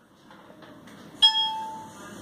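A single bell-like chime about a second in: one clear ringing tone that fades away over about half a second.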